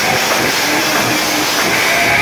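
Live rock band playing loud, with drums, bass and guitars blurred into a dense, steady wash of distortion.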